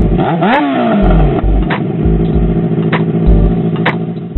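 Yamaha XJ6's inline-four engine revved once, rising then falling in pitch, and then running steadily.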